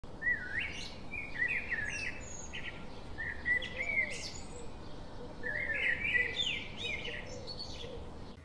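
Birdsong: several phrases of quick chirps and warbling notes that slide up and down, with short pauses between them, over a faint steady hiss.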